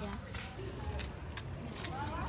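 Quiet street ambience: a steady low rumble with faint distant voices and a few light ticks.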